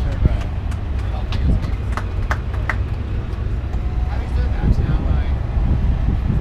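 Outdoor ambience of people talking nearby over a steady low rumble, with a few sharp clicks about two seconds in.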